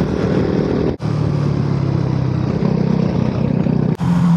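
Motorcycle engine running steadily at road speed under wind noise, as heard from a camera mounted on the bike. The sound drops out for an instant about a second in, then carries on.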